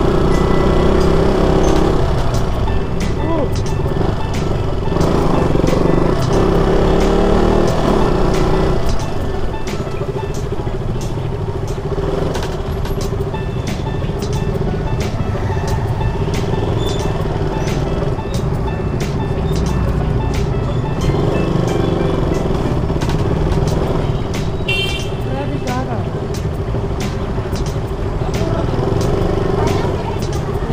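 Sport motorcycle running at a steady engine speed while riding through city traffic, its engine drone steady under road and wind noise, with other motorbikes and scooters passing.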